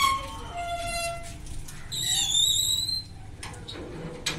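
Metal gate hinges squealing as a small steel gate is swung open, a drawn-out squeal that slides lower over the first second and a half, then a second, higher squeal about two seconds in as the gate moves again.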